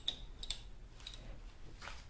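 A few faint clicks and taps from a hand handling the bicycle's handlebar and brake lever: one at the start, one about half a second in and one near the end, over quiet room tone.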